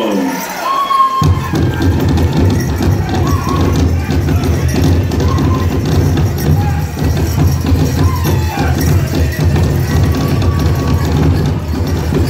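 Powwow drum group playing a fast song for fancy dance: a big drum beaten in a rapid, steady beat by several drummers, with high singing voices above it. The drumming comes in about a second in, after the lead singer's high opening line.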